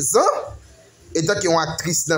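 A man's voice repeating a short phrase in a sing-song, rising and falling pitch, with a brief pause just after the start.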